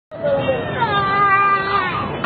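A person's voice in one long drawn-out call, its pitch wavering and sliding down.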